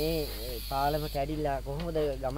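A man speaking, with a steady high hiss under his voice that cuts off suddenly about a second in.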